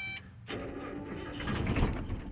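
Starter motor cranking the 1989 Mazda Miata's 1.6-litre four-cylinder engine with the car in first gear and no clutch, so the starter is pulling the car forward from a dead stop. A clunk about half a second in as the starter engages, then uneven cranking that grows louder towards the end.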